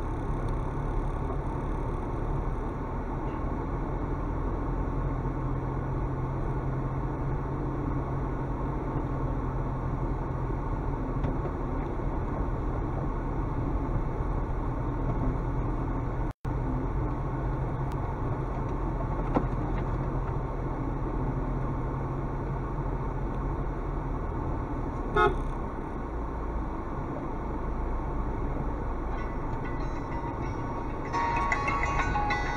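A car's engine and tyre noise, heard from inside the cabin, as it drives steadily along a rough dirt track. The horn gives one short toot about 25 seconds in, and the sound cuts out for an instant just after halfway.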